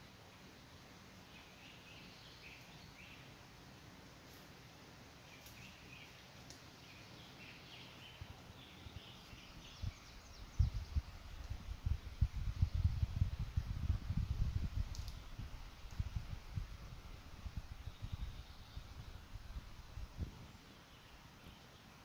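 Quiet forest ambience with faint, scattered bird chirps. About ten seconds in, low rumbling and thumping noise on the phone's microphone takes over for about ten seconds, then fades.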